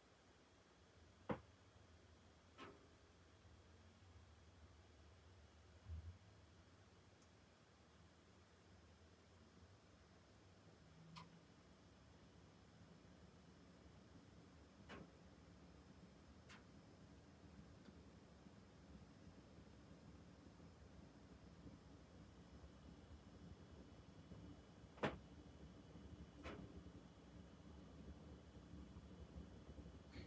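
Near silence: the Lennox SLP98UHV furnace's blower running in fan-only mode at a very slow speed, barely audible as a faint low hum that slowly grows a little louder. A few faint, sharp clicks are scattered through it.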